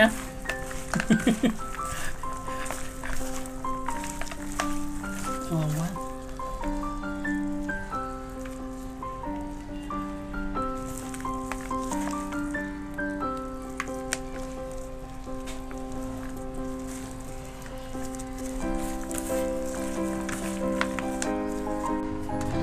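Background instrumental music with a slow melody of held notes. Under it is a light, crackly rustle of a gloved hand tossing shredded green mango salad in a plastic bowl.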